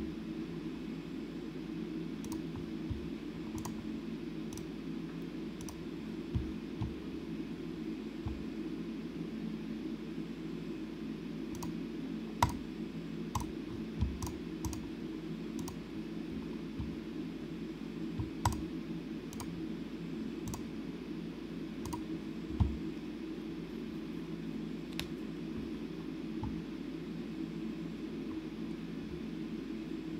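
Scattered clicks of a computer mouse and keyboard at irregular intervals, over a steady low hum in the room.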